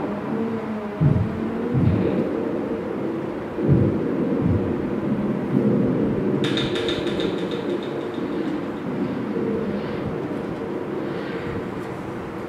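Live electronic music: a dense, low rumbling drone with a few deep thumps in the first half, and a bright ringing tone that comes in sharply about six and a half seconds in and fades over a second or two.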